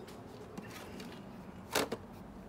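Handling noise: a brief clatter of two or three quick knocks near the end, against faint outdoor background.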